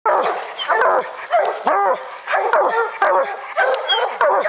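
Bear hounds baying at a black bear treed above them, a steady run of loud barks at nearly two a second.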